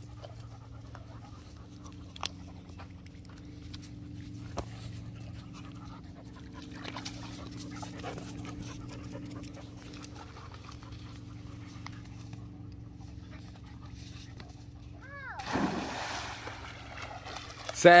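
A dog panting over a low steady hum. Near the end, louder sounds of water and a splash as the Cane Corso goes into the lake.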